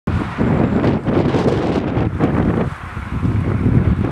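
Wind buffeting the microphone in uneven gusts, strongest in the low end.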